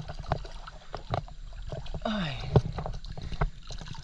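Shallow creek water splashing and sloshing close to the microphone, in many small irregular splashes. Just after halfway there is a short falling voice-like sound.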